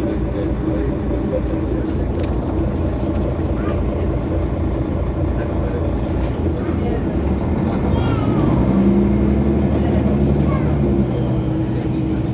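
Mercedes-Benz Citaro facelift city bus engine running with a steady low drone. About eight seconds in its note changes and it grows a little louder, as under acceleration.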